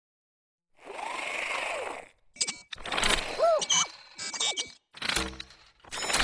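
Animated WALL-E robot sound effects: a whirring motor sound that swells and fades, then mechanical clicks and clanks, and short rising-and-falling electronic voice chirps in separate bursts.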